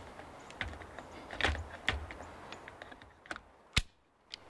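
A camera on its quick-release plate is fitted back onto a video tripod's fluid head, with a few soft knocks and rattles of plastic and metal. Near the end comes one sharp click as the plate latches into place.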